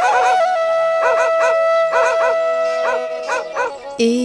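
Song music: a bamboo flute holds one long steady note while short yelping calls break in over it in small groups, about once a second. The note thins out and the level dips just before the end.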